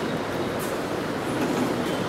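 Steady, even background noise in a large hall, a rumble-like room noise with no clear speech or distinct events.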